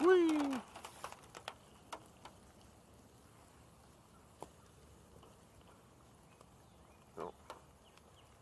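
A man's voice trails off in a falling groan, then several light, sharp clicks and taps come over the next two seconds. After that it is mostly quiet outdoor air with the odd faint tick, and a short murmur near the end.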